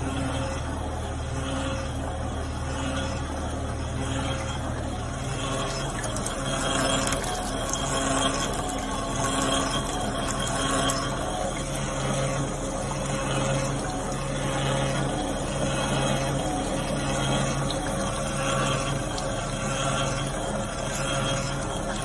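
Hand-cranked cream separator running: a steady mechanical hum from its spinning bowl and gearing that swells and eases in an even rhythm. The owner says this separator is about worn out.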